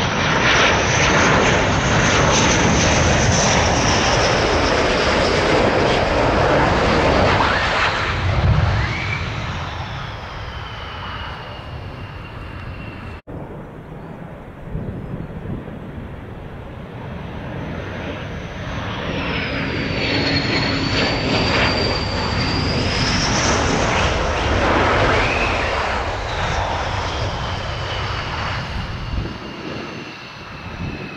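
McDonnell Douglas F-15 Eagle jets on landing approach with gear down, their twin turbofans at approach power: loud rushing jet noise with a high whine that falls in pitch as each aircraft passes. The sound cuts off about 13 seconds in, and a second F-15 is heard approaching and passing in the second half.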